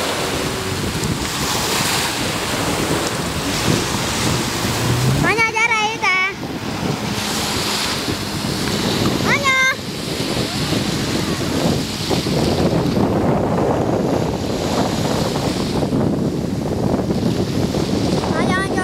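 Waves washing in and wind buffeting the microphone, with a jet ski's engine running out on the water. A high-pitched voice calls out briefly about six seconds in and again near ten seconds.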